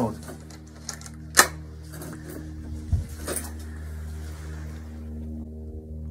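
Handling noise from a scoped hunting rifle being picked up and brought to the camera: a few short knocks and clicks, the sharpest about a second and a half in and a softer one near the middle, over a steady low hum.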